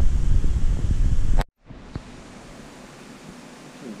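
A loud, steady rumbling noise, strongest in the low pitches, that cuts off abruptly about one and a half seconds in, leaving a much quieter steady hiss.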